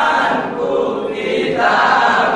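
A group of young men singing together in unison, in short phrases with brief breaks between them.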